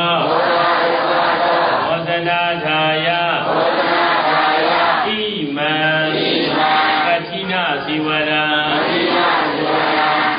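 A Buddhist monk's voice chanting in phrases with long held notes, with hissy breaks between the phrases.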